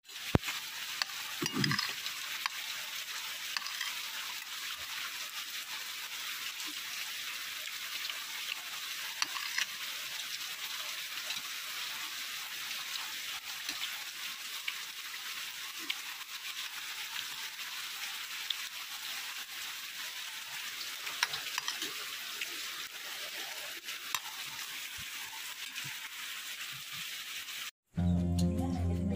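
Steady hiss of rain falling, with a few faint clinks of spoons on plates.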